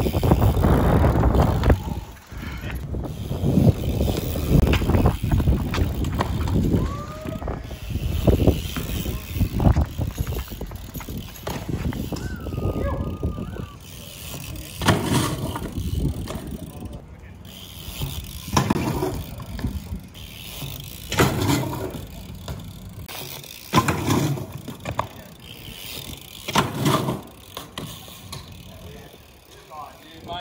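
BMX bike riding on concrete: tyres rolling, with loud rolling and wind noise in the first two seconds. Repeated sharp knocks follow as the bike hops onto, lands on and rides concrete ledges and steps.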